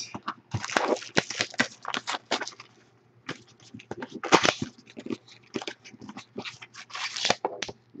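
Plastic wrapping crinkling and a cardboard trading-card box being torn open and handled, giving irregular crackles and rustles.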